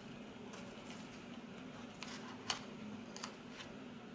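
A few small clicks and taps from paper sticker sheets being handled, the sharpest about two and a half seconds in, over a low steady room hum.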